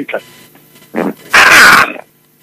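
A person's voice: a short vocal sound about a second in, then a loud, breathy burst of voice lasting about half a second.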